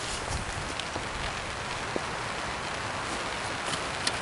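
Rain hitting a tarp overhead: a steady, even hiss with a few faint taps.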